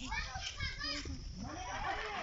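Children's voices calling out while playing, high-pitched and strongest in the first second.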